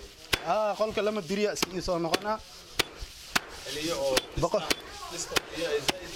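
Repeated sharp blows struck into a pile of dry straw, irregular, about two a second, with a man's voice between them.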